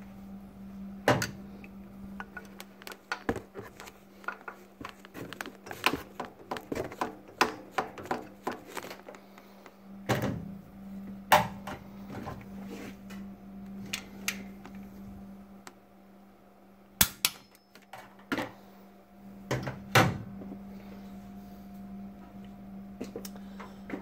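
Irregular metallic clicks, taps and a few louder knocks from hand tools and parts being handled at the front of a Dodge 318 V8 while a part of the timing set is fitted, with a quiet spell in the middle.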